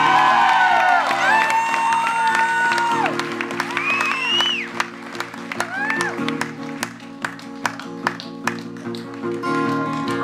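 Live acoustic band holding a sustained guitar chord while voices whoop and cry out in rising and falling glides, then a steady run of sharp claps or clicks from about halfway through over the fading chord.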